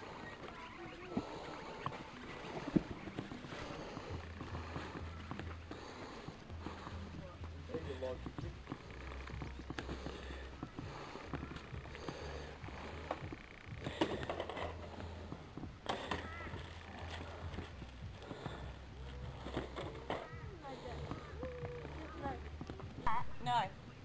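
Indistinct voices of several people talking outdoors, none close to the microphone, over a low bass line that steps between a few notes. Clearer voices come in near the end.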